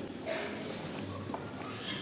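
Indistinct murmuring voices in a hall, with scattered light clicks or taps.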